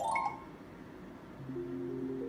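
Electronic slot machine jingle: a quick rising run of chime tones at the very start, then a held low melody of several tones coming in about one and a half seconds in.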